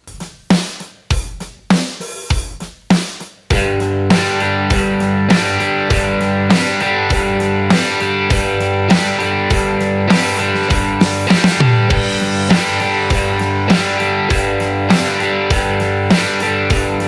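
A drum groove of kick, snare and hi-hat plays alone for about three and a half seconds, then a Telecaster-style electric guitar comes in strumming a chord in time with the beat.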